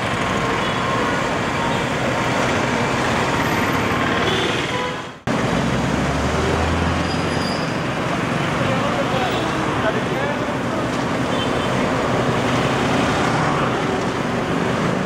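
Street traffic at a road junction: cars, autorickshaws and motorcycles passing in a steady wash of engine and tyre noise. The sound breaks off briefly about five seconds in, and a low engine drone comes through a second or two later.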